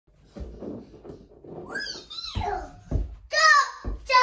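A toddler's high-pitched babbling and squealing, loudest in a burst near the end, with a few dull low thumps in between.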